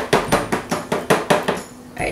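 Silicone spatula knocking against the sides of a plastic bucket of soap batter while scraping and stirring, a quick, even run of clicks about six a second that stops shortly before the end.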